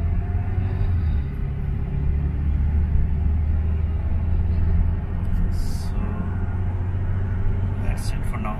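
Steady low rumble of a moving car heard from inside the cabin: engine and tyre road noise while driving.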